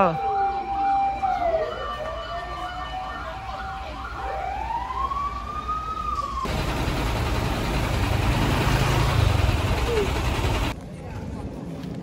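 Fire engine sirens: a fast yelping warble over a steady tone, giving way after about a second to slow rising and falling wails. About six and a half seconds in, a loud steady rushing noise takes over and stops shortly before the end.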